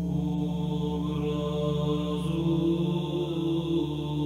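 Background music: a steady drone of held tones, shifting pitch once about a second and a half in.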